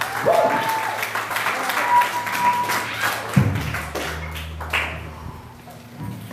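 Small club crowd clapping and shouting in the break after a punk song. A low bass note rings through an amplifier for about two seconds midway.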